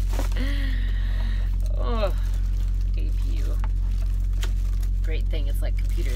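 A woman laughing softly, then a few quiet vocal sounds, over a steady low hum.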